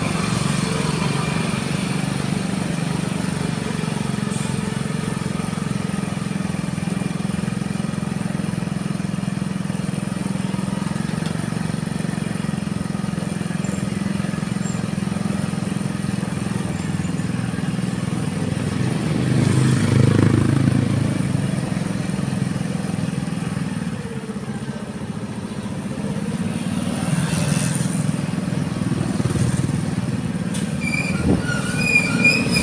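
Steady low drone of riding along a road, heard on a mic that moves with the rider. It swells louder about 20 seconds in and eases off a little a few seconds later.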